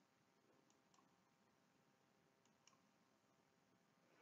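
Near silence, with two pairs of very faint mouse-button clicks, one pair under a second in and another about two and a half seconds in.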